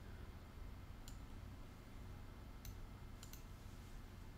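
Faint computer mouse clicks: one about a second in, another later, then a quick double click near the end, over a low steady hum.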